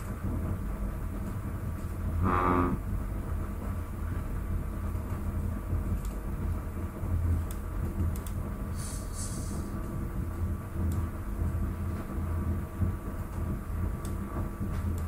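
Steady low hum of background room noise, with a few faint clicks and one brief pitched sound about two seconds in.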